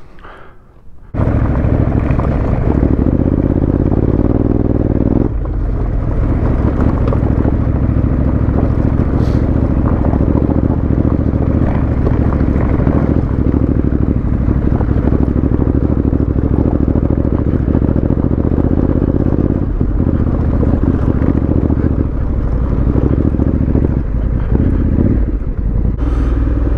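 Honda CRF1100L Africa Twin's parallel-twin engine running steadily as the bike rides a gravel track, heard from the bike with wind noise. The sound starts abruptly about a second in.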